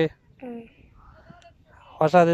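Quiet speech only: one short spoken syllable about half a second in, then faint whispered or breathy talk.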